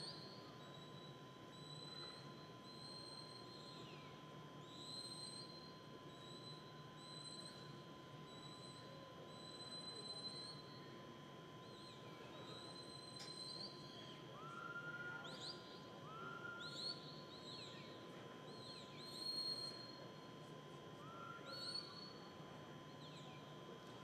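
Faint sheepdog herding whistle commands from the handler: a series of separate high whistles, some held flat and some sliding up or down at the ends, repeated every second or two and loudest near the end. They are the signals directing a border collie working sheep.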